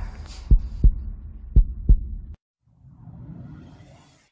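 Heartbeat-style sound effect: two pairs of deep double thuds about a second apart, with a low throb under them, cutting off suddenly. A soft whoosh rises near the end.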